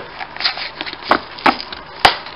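A cardboard-and-plastic blister pack being pried open by hand: crinkling and crackling of card and plastic, with two sharper snaps a little after one second and at about one and a half seconds.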